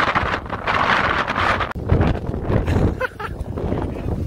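Gusty wind buffeting the microphone: a loud, even rush with low rumbling swells that rise and fall.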